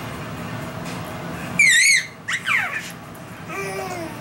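A baby's loud, high-pitched warbling squeal about halfway through, followed by shorter squeals falling in pitch.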